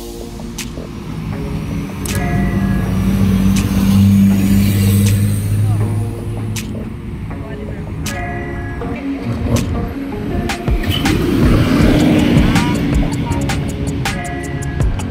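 City street traffic at an intersection: car and larger vehicle engines running and passing, with a low engine hum loudest in the first half and again later on, mixed with background music and voices.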